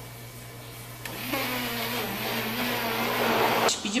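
Handheld immersion blender (stick mixer) running in a plastic cup of pancake batter, a steady whir that starts about a second in and cuts off suddenly near the end.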